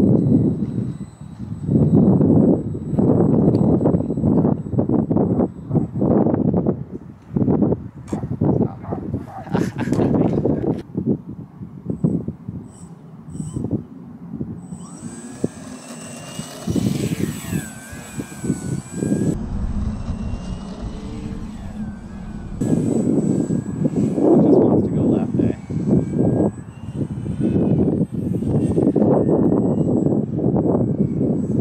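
Gusty wind buffeting the microphone, with the propeller whine of a small electric RC model plane in flight. For a few seconds in the middle the whine is clearer, its pitch sliding as the plane runs on the grass.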